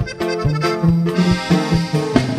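Norteño band music: the accordion plays an instrumental passage between sung verses, over a steady, rhythmic accompaniment with a bass line.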